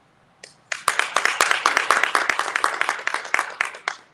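Audience applauding: a burst of many hands clapping that starts about a second in and stops just before the end.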